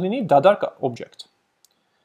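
A man speaking for about a second, then two faint quick clicks on a computer keyboard or mouse, then silence.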